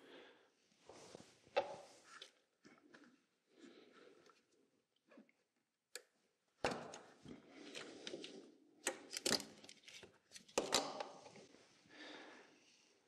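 Faint, scattered handling noises of hands working on plastic wiring connectors and leads in a car's engine bay: soft rustles and taps, growing busier about halfway through, with several sharp plastic clicks.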